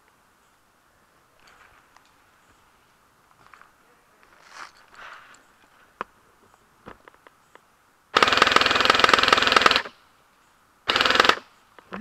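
Airsoft rifle firing full-auto, close to the microphone: a rapid rattle of about a second and a half, then a short half-second burst, with light handling noise before.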